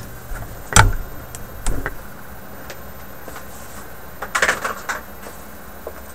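Handling noise at a workbench as old batteries and a multimeter are cleared off an electronics kit: a sharp knock about a second in, a smaller one shortly after, light clicks, and a short clatter around four and a half seconds.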